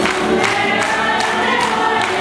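Croatian folk ensemble singing a song together in chorus, with a sharp, regular beat about two and a half times a second.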